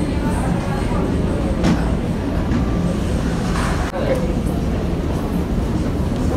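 Steady low rumble of a large, busy indoor hall, with indistinct murmured voices.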